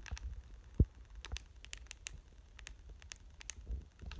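Plastic keypad buttons of a Baofeng UV-5R handheld radio being pressed: a dozen or more short, irregular clicks as a frequency is keyed in. There is one low thump about a second in.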